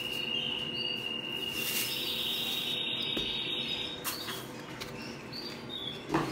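A canary singing in the background: a long, even trill that steps up to a higher trill about two seconds in, then fades. A couple of faint knocks are heard under it.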